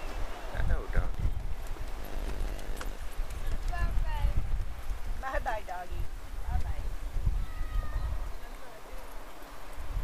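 Wind buffeting the microphone in a low rumble, with footsteps on wooden pier planks and a few short high-pitched vocal sounds from a toddler.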